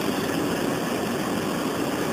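Steady, even background noise with no clear source, an unbroken machine-like hum holding level throughout.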